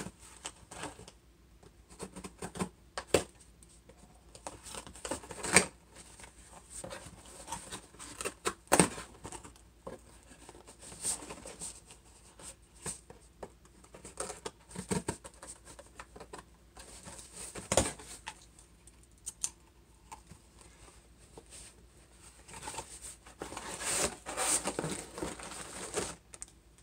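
Cardboard shipping box being opened by hand: scattered scrapes, clicks and tearing as the packing tape is cut and the flaps are pulled open. Near the end comes a louder stretch of crinkling as a plastic-wrapped item is lifted out.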